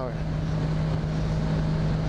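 1983 Honda V65 Magna's V4 engine running steadily at cruising speed, a constant even hum, with wind rushing over the microphone.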